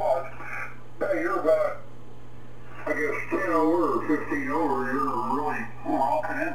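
Only speech: a man's voice coming in over a ham radio transceiver's speaker, the sound narrow and thin as on single sideband, with pauses between phrases and a steady low hum underneath.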